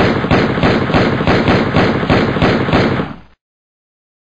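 Loud, harsh distorted noise beating about four times a second, cutting off suddenly a little past three seconds in.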